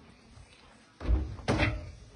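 A door banging twice: two heavy knocks about half a second apart, starting about a second in.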